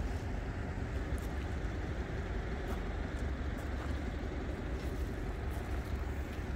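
Steady, fluctuating low rumble of wind buffeting a phone microphone outdoors, with a few faint ticks.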